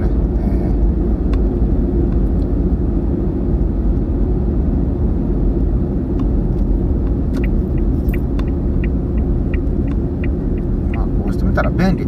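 Steady road and engine noise inside a moving car's cabin. About halfway through, a turn-signal indicator ticks for about four seconds, a little over two ticks a second.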